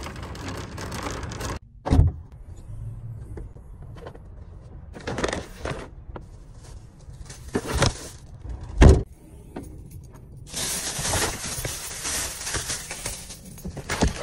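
Shopping cart wheels rolling over asphalt, cut off abruptly, then shopping bags being set down in a car trunk: several thumps, the loudest about nine seconds in, and plastic bags crinkling near the end.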